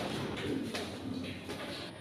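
Faint low cooing of a pigeon, with a couple of clicks from the phone being handled.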